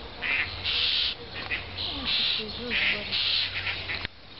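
Small perched bird giving harsh, hissing calls, about six in quick succession, with fainter low calls beneath.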